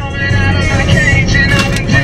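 Car pulling away, with engine and road rumble under music.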